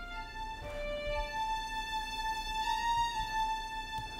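Logic Pro X Studio Strings first-violin section playing a slow D minor melody alone: a few short notes, then one long held note from about a second in that swells and eases. The swell comes from mod-wheel modulation shaping the bowed dynamics.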